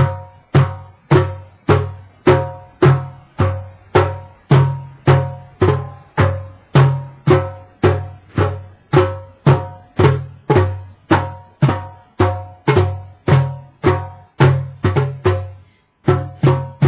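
Two djembe hand drums struck with open hands in a slow, even beat of a little under two strokes a second, each stroke giving a deep boom with a ringing tone above it. A quicker run of strokes comes near the end.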